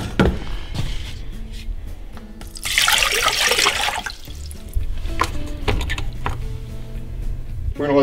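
Water poured from a plastic measuring jug into a saucepan, a splashing pour of about a second, starting nearly three seconds in.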